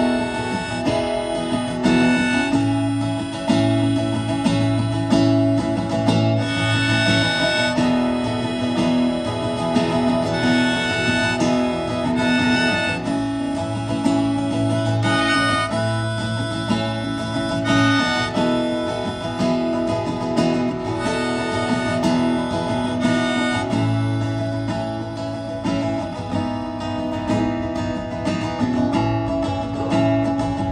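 Acoustic guitar played live in an instrumental break, with a held melody line on top that changes note every second or two.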